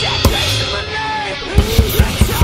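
Acoustic drum kit with clear acrylic shells and cymbals played live over a heavy rock backing track. The drums drop out briefly soon after the start, leaving only the track's sustained notes. They then come back in hard about one and a half seconds in with rapid bass-drum hits and cymbal crashes.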